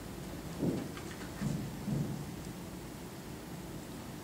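Quiet room tone with three faint, short low thuds, about half a second in and again around one and a half and two seconds.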